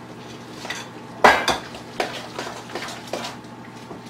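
Large metal spoon scraping and knocking against a glass mixing bowl while stirring a thick rice, cheese, sour-cream and egg filling. The strokes come irregularly, with one louder knock just over a second in.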